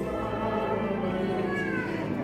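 Church choir singing a hymn, with long held notes and a voice sliding down in pitch near the end.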